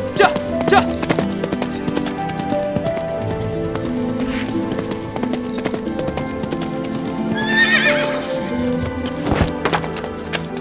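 Horse hooves clip-clopping on a dirt track in the first second, then a horse whinnies about seven and a half seconds in, a wavering call that falls in pitch. Background music plays underneath.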